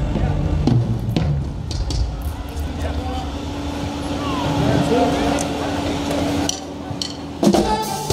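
Live band between numbers: a few drum-kit hits and crowd voices, with a held steady tone in the middle, then the band comes in loudly near the end.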